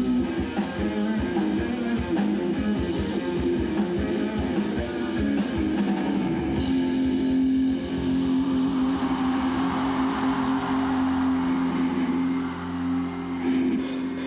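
Live band music led by electric guitar, with strummed chords over a steady beat. About six and a half seconds in, the beat drops away to a long held chord. The rhythm picks up again near the end.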